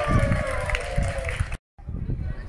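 Voices shouting on an outdoor football pitch, led by one long call that slides down in pitch, over a low rumble. The sound drops out for a moment near the end.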